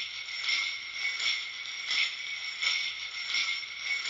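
Sampled sleigh bells looping in time, a jingle swelling on each beat about every 0.7 s. The bells sound thin and filtered, with the lows and the highest top cut away, and carry a lo-fi effect and reverb.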